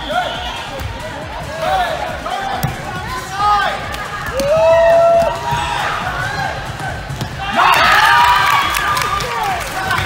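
Indoor volleyball rally: athletic shoes squeak on a hardwood gym floor and the ball is struck, among players' and spectators' voices. About three quarters of the way through a louder burst of crowd shouting rises and lasts nearly two seconds.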